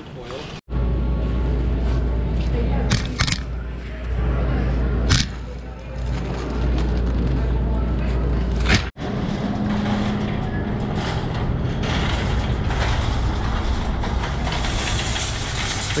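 A wire supermarket shopping cart rolling with a steady low rumble and rattle, with a few sharp knocks as items are dropped into its basket. The sound breaks off abruptly twice, about half a second in and near nine seconds.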